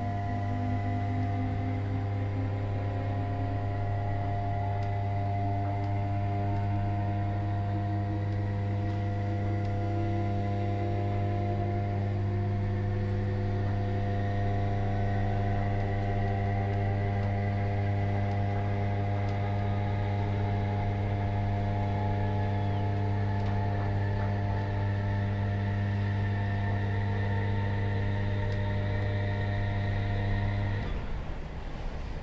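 Interior of a Class 317 electric multiple unit under way: a steady low electrical hum from the train's traction equipment, with a fainter whine that rises slowly in pitch as the train gathers speed.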